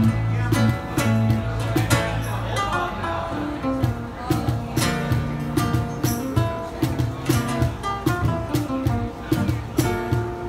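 Live flamenco-style instrumental: acoustic guitar playing over electric bass guitar, with frequent sharp percussion strokes.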